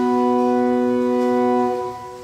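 Handbell choir and flute music: a held chord of steady tones that fades away near the end.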